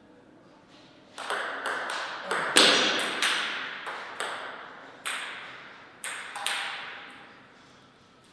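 Table tennis rally: the celluloid ball clicks sharply off the paddles and the table about a dozen times, starting about a second in. Each strike trails a short echo, and the clicks stop after about six and a half seconds as the point ends.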